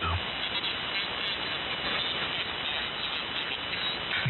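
Steady hiss of shortwave band noise from an amateur-radio receiver tuned to the 75-meter band, an open single-sideband channel heard between two stations' transmissions.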